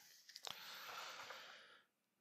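Near silence: a faint click about half a second in, then a soft hiss lasting about a second.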